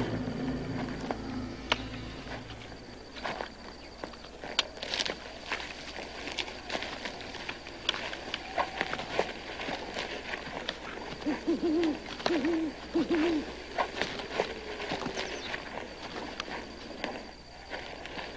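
An owl hooting, three wavering hoots in quick succession about eleven seconds in, over scattered snaps and rustles of footsteps in undergrowth.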